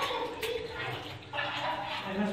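Indistinct voices with water sounds in a wet mine passage.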